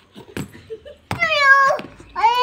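A rubber slipper slaps once on concrete. About a second in, a toddler gives a loud high-pitched squeal of just under a second that drops in pitch at the end.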